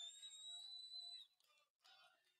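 A single faint, high, steady whistle about a second long, gliding up slightly as it starts and then holding one pitch before it stops.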